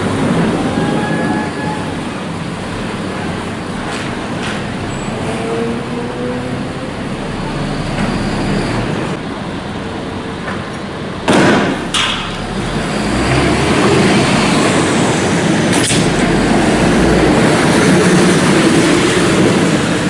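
Heavy armoured police vehicle's engine running close by in a steady rumble that grows louder in the second half. About eleven seconds in comes one loud sudden bang, with a sharper crack a moment later.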